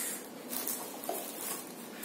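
Faint rustling and light knocks of packets and small items being handled and placed into a cardboard first aid box.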